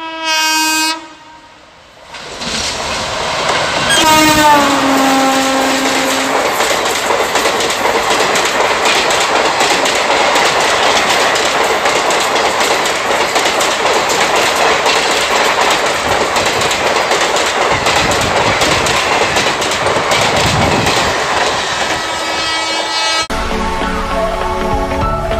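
Passenger express train horn sounding briefly, then again about four seconds in as the train rushes past, its pitch dropping. This is followed by a long, steady rush and clatter of the coaches passing at high speed.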